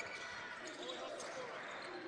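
Live court sound of a basketball game: the ball being dribbled on a hardwood floor under a faint wash of voices from the players and the small crowd in the gym.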